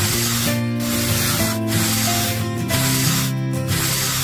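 A miniature trowel scraping and smoothing wet cement, heard as a hissing scrape in repeated strokes about once a second. Background music plays throughout.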